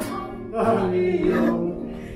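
An elderly man singing a song into a handheld microphone, holding long, wavering notes, over a musical backing.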